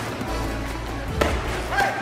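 Background music, with one sharp crack about a second in: a rattan escrima stick striking a fighter's padded armour or helmet during sparring.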